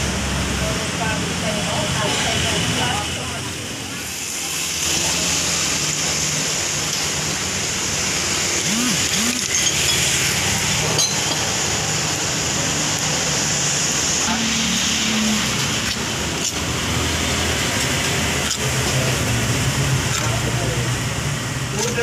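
Steady street traffic noise under indistinct background voices, with a few light clicks.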